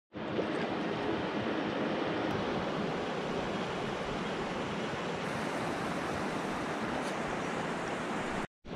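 Steady rush of river water running over a concrete weir and shallow rocks, an even noise with no breaks.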